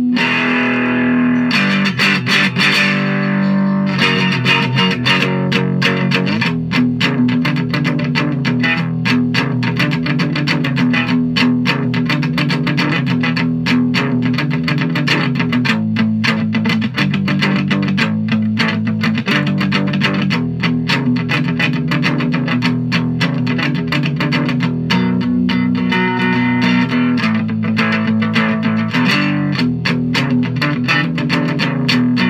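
Electric three-string cigar box guitar tuned E-B-E, played through an amplifier with no effects: a fast, steadily picked blues riff over low ringing open-string notes.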